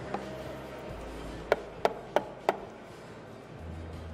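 Four sharp knocks about a third of a second apart, with a short ring after each: items being set down or tapped on a bar counter, over faint background music.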